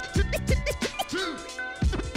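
Turntable scratching: a vinyl record pushed back and forth by hand and chopped by the mixer's crossfader, giving quick, clipped scratches that rise and fall in pitch, several a second, over a beat with a low bass.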